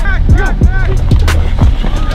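Background music: a beat with deep bass notes that fall in pitch and a vocal line over it.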